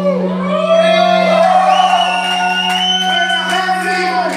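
A held low note from a band's live set rings out at the end of a song while the audience in a hall cheers, shouts and whoops.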